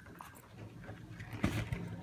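Faint handling noise of a phone camera being repositioned on a table, with one sharp knock about a second and a half in, over a faint low steady hum.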